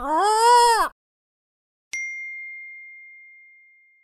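Audio logo sting: a short pitched sound that swoops up and then down, ending just under a second in, then a single high ding about two seconds in that rings and fades out over nearly two seconds.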